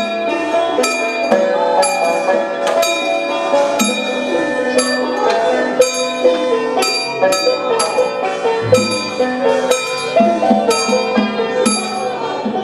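Taoist ritual music: ringing metal percussion, bell or gong-like strikes about twice a second, over a wavering melodic line.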